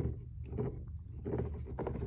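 Fox red Labrador puppy chewing and mouthing a toy: irregular rustling with scattered short clicks as it gnaws and shifts against the carpet.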